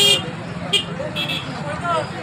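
Roadside crowd voices with several short, high-pitched vehicle-horn toots, the loudest right at the start, over a steady low traffic hum.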